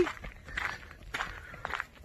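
Footsteps crunching on a dirt trail, a few uneven steps.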